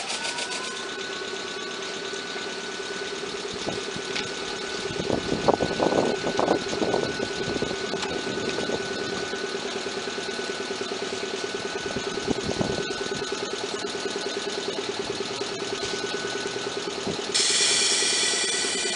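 Underfloor control equipment of an Ichibata Electric Railway 3000-series electric train in operation: a steady electrical hum with an even pulse. There is a burst of contactors clacking about five to seven seconds in and a few more clicks around twelve seconds. A louder, brighter noise starts just before the end.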